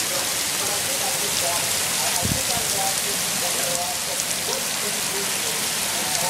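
Heavy rain falling steadily on pavement, with a short low thump a little over two seconds in.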